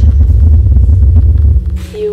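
Video soundtrack played through room speakers: a loud, deep, steady rumble that falls away about a second and a half in. A brief hiss follows, and then a held tone sets in at the very end.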